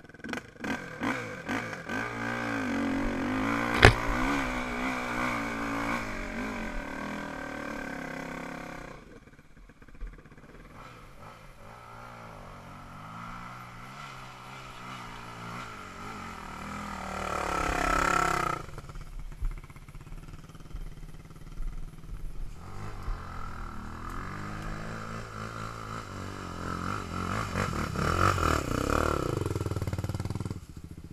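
Sport ATV engines on a rough dirt trail, revving up and down with the throttle: loud at first, dropping off, then rising again midway and near the end. A single sharp knock about four seconds in.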